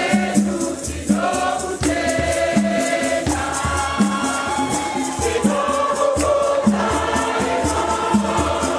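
A choir singing a Shona Catholic hymn in full voices, over steady rattle strokes and a regular low beat.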